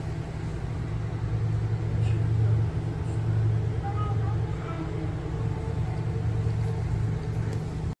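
A steady low rumble, deep and continuous, with faint traces of voices partway through.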